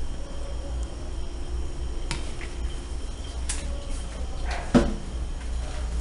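A few sharp clicks and one brief, louder scrape as a pot and spoon are handled, over a low steady hum.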